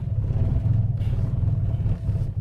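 Car engine idling in reverse with the brake held, a steady low rumble. It runs rough and shakes under the load of the transmission, the fault that makes this car stall when put in reverse.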